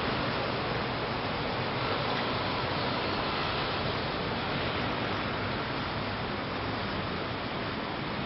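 Steady, even rushing noise of outdoor ambience, with no distinct events standing out.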